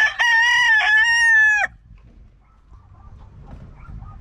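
Ray Alexander Roundhead gamecock crowing: the long, held last note of its crow, which stops abruptly about a second and a half in.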